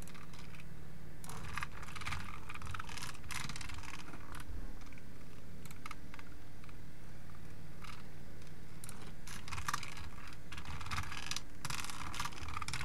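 Computer keyboard typing in bursts of key clicks, one run starting about a second in and another near the end, with a sparse pause between them, over a faint low steady hum.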